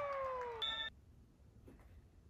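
In a gym volleyball clip, a spectator's long high cry slides slowly down in pitch, followed by a brief high whistle blast. Then the sound cuts off suddenly to near silence.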